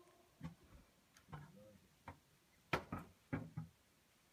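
Faint, scattered clicks and soft knocks, about five of them spread over a few seconds, in otherwise quiet surroundings.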